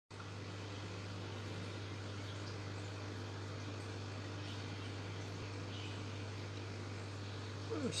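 A steady low hum, unchanging throughout, with a man's voice starting just before the end.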